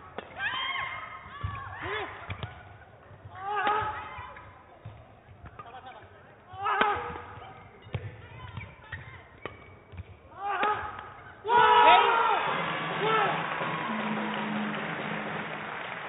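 Badminton doubles rally: rackets striking the shuttlecock about once a second, with shoe squeaks on the court. The rally ends about 11.5 s in and the crowd cheers and shouts loudly for the point.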